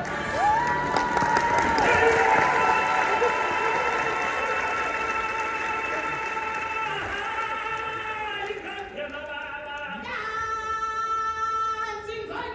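Music with choral singing in long held notes. About half a second in, a voice slides up into one long sustained note, and near the end a fuller chord of voices comes in.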